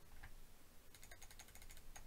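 Faint run of quick computer mouse clicks, starting about halfway through: the 'Add' button being clicked several times in a row.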